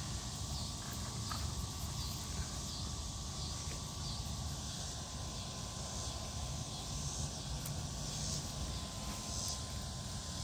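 Steady outdoor ambience: an insect chorus with a faint steady whine, over a low rumble.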